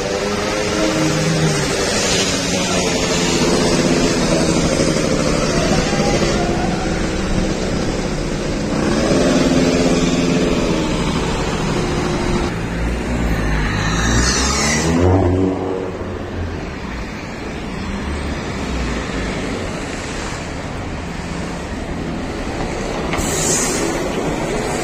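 Street traffic: car engines running and passing close by, their pitch rising and falling. One vehicle goes past with a deep rumble and a falling pitch about fourteen seconds in.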